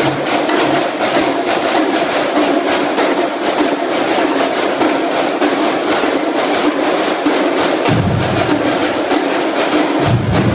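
Marching drumline battery, snare drums and bass drums, playing a fast double-beat exercise together with a rapid, even stream of strokes. The low bass-drum notes grow louder about eight seconds in.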